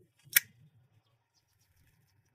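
A metal cigar lighter snapping shut: one sharp metallic click about a third of a second in.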